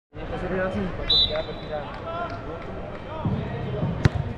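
Reverberant indoor soccer-hall ambience: distant voices and soccer balls thudding on the turf, with a short high tone about a second in.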